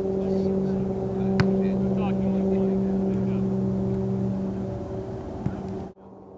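A steady low mechanical hum like a running motor, easing off slightly toward the end, with a sharp click about a second and a half in.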